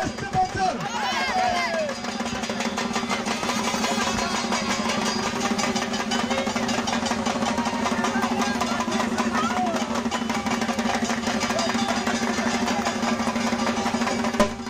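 Dhak drums beaten in a fast, steady beat, with voices from the crowd over them that are plainest in the first couple of seconds.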